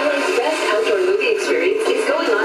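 An FM radio broadcast playing music with a singing voice over held instrumental tones, thin and without bass as from a small radio speaker.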